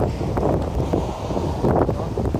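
Wind buffeting a body-worn camera's microphone: a steady low rumble.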